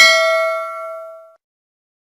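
Notification-bell chime sound effect: one bright ding with several ringing tones at once, fading out about a second and a half in.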